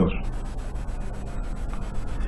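A steady hiss of background noise, even and without any pitch, filling a pause in speech.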